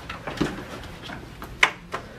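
A few sharp clicks and knocks from a hotel room door's handle and latch as it is being opened, the crispest click about three-quarters of the way through.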